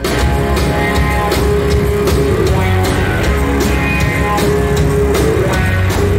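A rock band playing live on electric guitar, bass guitar and drum kit: an instrumental passage with a steady drum beat, the full band coming back in right at the start.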